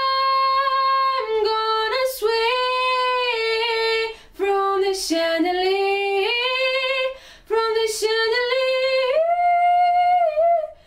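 A solo female voice singing a cappella, holding long, drawn-out notes with quick sharp breaths between phrases, and climbing to a higher held note near the end.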